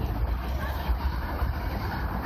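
City street ambience at a busy intersection: steady traffic noise with a strong low rumble.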